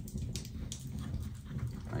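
Soft rustling and a few faint clicks as a small leather flint wallet and the metal tools in it are handled.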